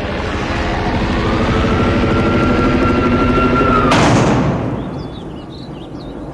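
Jet plane passing overhead, its engine noise building to a loud peak about four seconds in and then fading. Birds chirp near the end.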